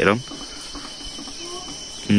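Insects chirring steadily in the background, a high even hiss with a thin steady whine, just after a man's voice trails off.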